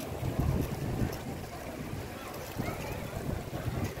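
Wind buffeting the microphone: an uneven low rumble that swells and drops, with faint voices of passers-by under it.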